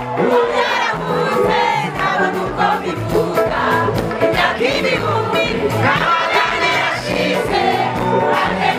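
A large crowd singing along to live gospel music played through a PA system, many voices together over a steady bass line.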